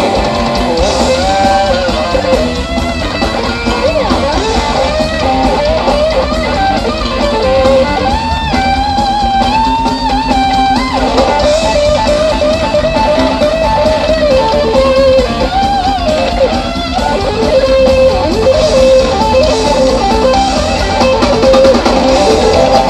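Live rock band playing an instrumental section, with an electric guitar carrying a wavering lead line over the bass and drums.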